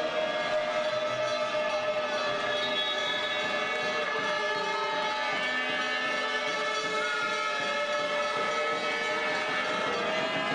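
Several spectators' horns blown together in a sports hall, many steady held tones at different pitches overlapping continuously.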